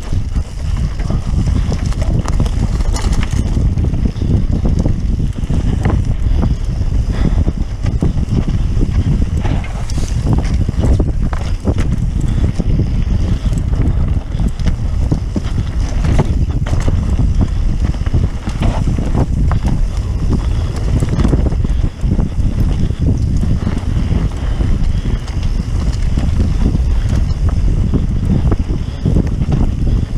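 Wind buffeting the microphone of a mountain bike at speed, over the noise of its tyres on loose dirt, with frequent short knocks and rattles from the bike over bumps.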